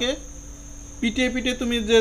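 A steady, high-pitched trill running unbroken under a man's voice, which pauses briefly and resumes about a second in.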